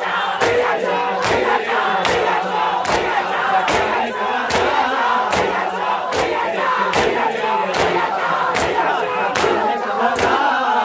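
Crowd of bare-chested men doing matam: open-hand slaps on their chests land together in a steady beat, a little under once a second, over loud massed chanting and shouting.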